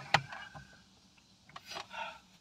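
Tissue paper rubbing and rustling against skin as sweat is wiped from the face, with a sharp tap just after the start and a second burst of rustling near the end.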